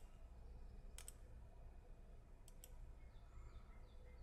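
Near silence with faint computer mouse clicks: a quick double click about a second in and another about two and a half seconds in, over a low hum.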